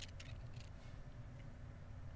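A few light clicks in the first second, from seashells (angel wings) knocking together in a hand, over a faint steady low rumble.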